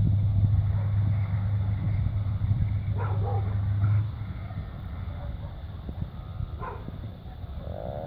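Diesel locomotive running light with no train, its engine making a steady low drone that drops away about four seconds in as it moves off. A dog barks briefly about three seconds in and again near the end.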